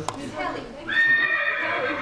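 A recorded horse whinny playing from a computer, the horse.ogg/horse.mp3 sample loaded by an HTML audio element. It starts about a second in as a steady high call and runs on. A click comes just before it, at the start.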